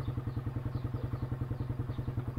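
An engine running steadily nearby, its low, even pulse beating about eight times a second.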